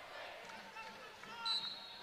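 Faint basketball arena sound from a game broadcast: crowd murmur and on-court noise, with a short steady high tone about a second and a half in.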